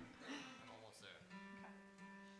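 Acoustic guitar: a soft chord played about a second in, ringing on quietly and steadily.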